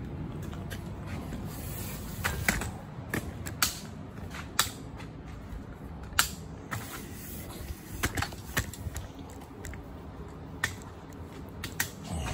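Irregular sharp clicks and light knocks over a steady low hum: handling noise as a phone camera is picked up and moved against clothing.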